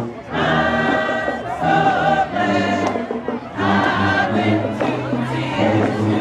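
Alumni marching band performing in short phrases of held chords, ending on a long low note, over crowd noise.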